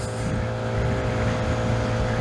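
Vespa GTS 125 scooter's single-cylinder engine running at a steady cruising speed, with wind noise on the microphone.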